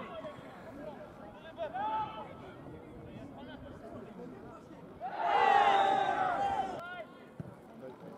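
Football crowd shouting together for about two seconds a little past the middle, over faint scattered voices and chatter.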